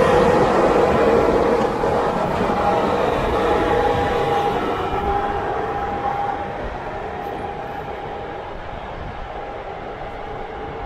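CFR Călători Class 40 electric locomotive running past and away, a steady rumbling hum with a faint held whine. It is loudest at first and fades gradually as it draws off.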